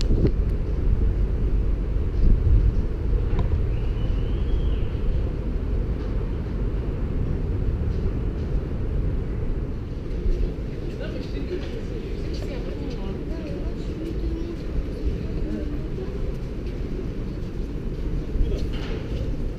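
Steady low rumble of wind and open-air ambience on a GoPro microphone, muffled, with faint distant voices now and then.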